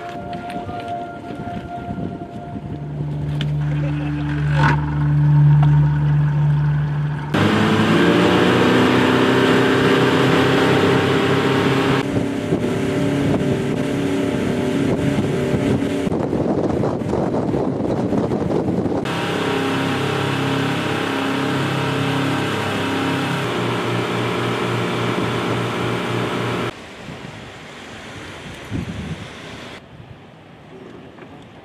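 Boat engines running as inflatable assault boats get under way and move across the water, with wind on the microphone. The engine sound jumps abruptly several times and drops to a quieter hum near the end.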